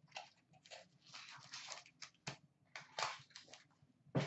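Panini Select hockey card pack's foil wrapper crinkling and tearing as it is opened, in short, irregular crackly rustles.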